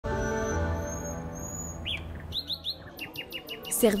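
Birds chirping in quick, high, falling notes over a held musical chord that fades out about halfway through.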